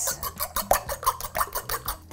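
A metal spoon beating raw eggs and yolks in a ceramic bowl: a rapid, even run of light clicks and scrapes as the spoon strikes the side of the bowl.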